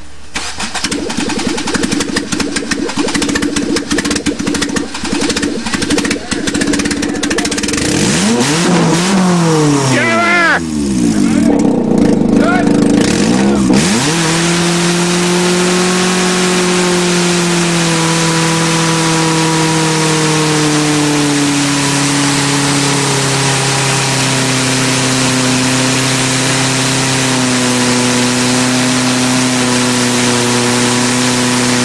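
A front-wheel-drive Nissan's four-cylinder engine revving hard in a burnout, its front tyre spinning on wet concrete. For the first half the revs rise and fall repeatedly. Then the engine is held high with its pitch slowly sinking, over a steady hiss from the spinning tyre.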